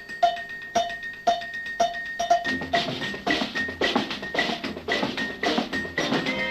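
Dance music from an old film soundtrack, led by a steady ringing percussion beat of about two strikes a second over a held high note. About halfway through, fuller band instruments join the beat.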